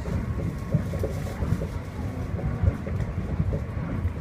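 Low, steady rumble of a Tama Toshi Monorail car running along its track, heard from inside the cabin, with occasional low knocks.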